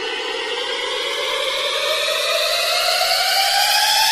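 Buzzy synthesized test tone in a DJ soundcheck mix, sweeping slowly and steadily upward in pitch while growing gradually louder.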